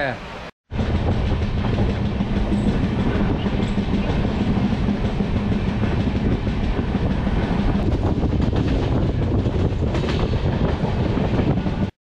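Passenger train in motion, heard from on board: a steady, loud running rumble of wheels on the rails with a low hum underneath. It starts abruptly after a brief silence near the start.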